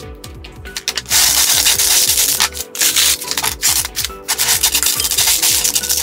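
A bristle hand brush sweeping loose marble chips and stone dust across a work table in repeated strokes, starting about a second in.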